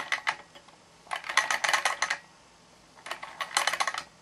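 Clockwork motor of a tin toy gramophone being wound by hand: bursts of quick metallic ratchet clicks, each about a second long, with short pauses between strokes.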